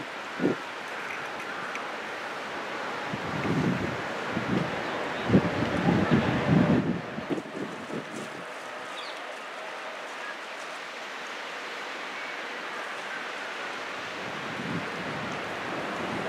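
Steady outdoor hiss with irregular gusts of wind buffeting the microphone a few seconds in, and a short knock near the start.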